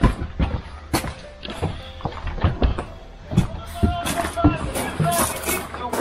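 Footsteps knocking on concrete while walking, with music and indistinct voices in the background.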